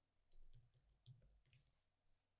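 Near silence with a few faint clicks of computer keyboard keys as a word is typed.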